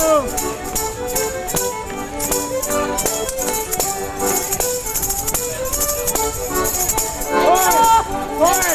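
Live folk dance tune played for Border Morris dancing, with steady melody notes over a running jingle-and-click rhythm. Voices sound over the music near the end.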